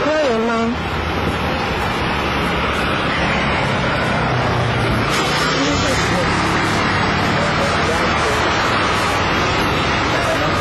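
Steady, loud outdoor background noise with a constant rushing character, with short bits of a voice at the start and again about halfway through.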